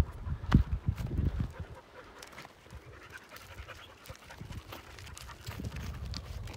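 An English pointer panting while it hunts through scrub. A few sharp knocks and footsteps on stony ground fall in the first second and a half.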